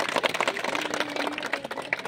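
A crowd clapping by hand: a dense, uneven patter of many people's claps that thins out near the end.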